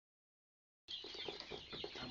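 A flock of young Kuroiler chickens chirping and clucking together, many short high calls overlapping, starting nearly a second in.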